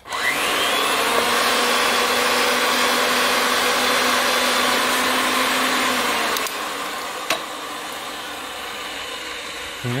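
Ridgid 300 pipe threading machine starting up and running, spinning the pipe while the cone reamer takes the inside burr off the cut end. Its whine climbs to speed at once, runs steady and louder for about six seconds, then drops to a lower level, with a single click about seven seconds in.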